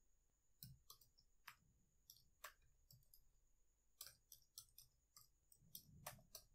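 Faint computer keyboard typing: irregular key clicks, several a second, over a faint steady high-pitched tone.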